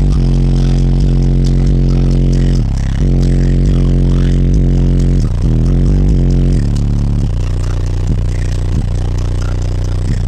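Car audio subwoofer system in a custom truck playing bass-heavy music very loud: deep held bass notes that change every couple of seconds, with light rattling.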